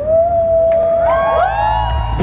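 Live band music heard from the audience at an outdoor concert: a long held note, then several notes sliding up and down near the end, over a steady low bass.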